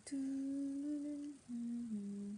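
A young woman humming with her lips closed: one long steady note, then a brief break about a second and a half in and a step down to a lower note.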